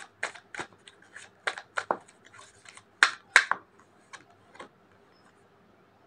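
Tarot cards being shuffled and handled: a quick, irregular run of papery snaps and flicks, the two sharpest about three seconds in, stopping about a second before the end.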